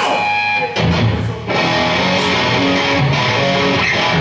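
Live rock band playing electric guitar and bass guitar at loud volume. A thinner opening with a few held guitar notes gives way to the full band, bass included, under a second in.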